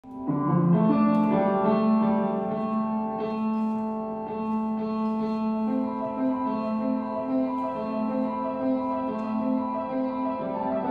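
Slow solo piano music with held chords that ring on. It starts within the first half second, and a low note begins alternating between two pitches about six seconds in.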